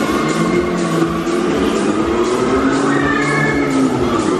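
Loud fairground ride music with a steady fast beat, with riders' shrieks and whoops over it as the ride swings.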